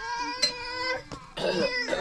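Goat bleating twice: a long, steady bleat, then after a short pause a second bleat with a wavering pitch.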